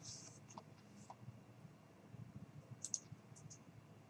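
Near silence: room tone with a few faint computer mouse clicks, a small cluster of them about three seconds in.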